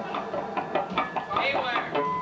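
Voices answering off-mic across a noisy room, with a few short knocks in the first second.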